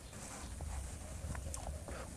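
Faint marker strokes on a whiteboard, a few light ticks and scrapes, over a low steady room hum.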